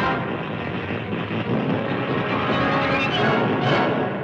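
Cartoon sound effect of electrical energy surging along a grounding cable as the creature's nuclear charge is drained off, a loud steady droning rush mixed with orchestral score.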